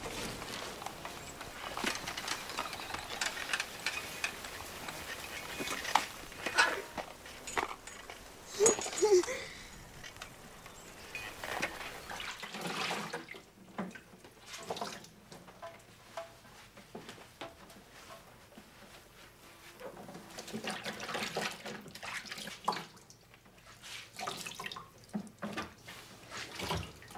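Water running at a kitchen sink with small clinks of dishes and utensils, loudest in the last third. Before it, in the first half, clatter and handling noises at a shop counter, with a few sharp knocks.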